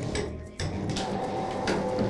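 Motor-driven observatory dome shutter sliding open, a steady mechanical hum with a held whine that starts abruptly about half a second in.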